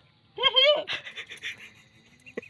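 A person's voice: a short, high, wavering vocal sound, then a quick run of breathy, panting pulses, as in laughter.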